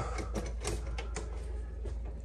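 A window roller shade being handled, giving a few faint light clicks and rattles over a steady low hum.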